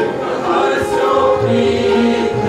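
Sikh shabad kirtan: men's voices singing a devotional hymn together over sustained bowed-string accompaniment, with tabla strokes joining about one and a half seconds in.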